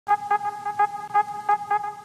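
Logo-intro sound effect: a steady, horn-like electronic tone that pulses in quick beats, several a second.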